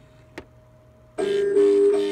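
Boogie Bass animatronic singing fish: near quiet with one sharp click, then a little over a second in its speaker abruptly starts the music of its song.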